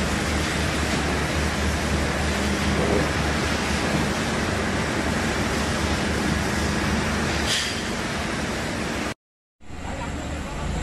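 Steady din of spinning-mill machinery running: a dense, even rush with a low hum beneath it. It cuts off abruptly about nine seconds in.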